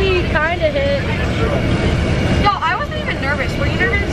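Steady low rumble of a coach bus on the road, heard inside the passenger cabin, with a girl talking over it.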